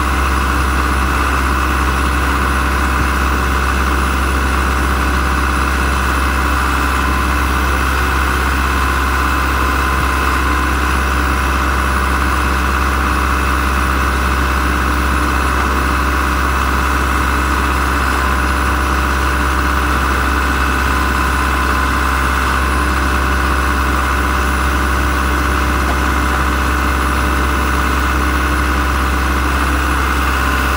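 The diesel engine of a 2004 Ditch Witch JT2720 All Terrain horizontal directional drill running steadily at an unchanging speed.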